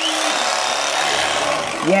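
Electric carving knife starting up abruptly and running steadily, its blades slicing through a roast pork shoulder.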